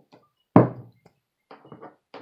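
A single hollow knock on a black plastic garbage can about half a second in, as a soldering iron tip is set against the plastic to melt a hole, with a few faint light taps after it.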